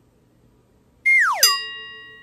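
Cartoon sound effect: about a second in, a quick falling slide-whistle glide ends in a bright bell-like ding that rings on and fades.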